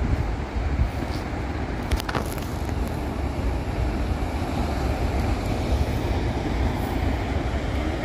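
Ocean surf breaking and washing over a rocky shore, a steady rushing noise, with wind rumbling on the microphone.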